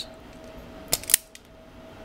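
Self-adjusting wire stripper clicking twice in quick succession about a second in, as its jaws grip and strip the insulation off a lamp lead.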